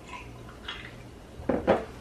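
Someone sipping a fizzy mixed soda from a glass and swallowing, with two short louder sounds about a second and a half in.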